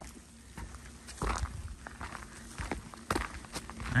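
Footsteps of a hiker walking along a wet dirt-and-gravel trail, a series of soft irregular crunching steps.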